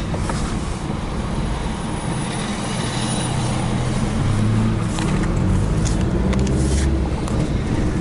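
A car engine running, heard from inside the cabin, with a low steady hum that grows a little louder partway through. A few short knocks come from the camera being handled and set in place.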